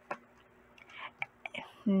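A woman's quiet whispered murmuring with small mouth clicks, then her voice starting to speak near the end. A single click comes just after the start, and a faint steady hum runs underneath.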